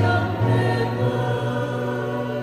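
Mixed choir of women's and men's voices singing a Vietnamese Catholic hymn, with long held notes.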